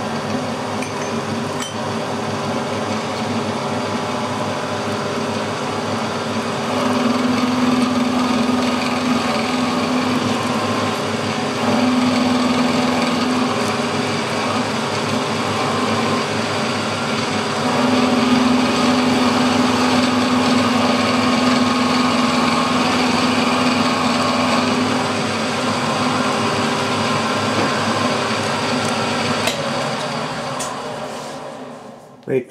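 Milling machine spindle running as an end mill cuts the ends of three aluminium bar blanks square: a steady machine hum with a held whining tone that grows louder in stretches while the cutter is in the metal, strongest from about seven seconds in and again from about eighteen to twenty-five seconds.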